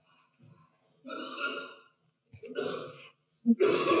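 A woman's breathy laughter close to the microphone: two short laughs, then a third near the end that runs into speech.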